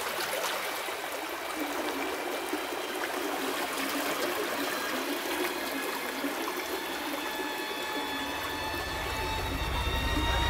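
River water running in a steady rush. Near the end a low drone and several high, held tones swell in over it.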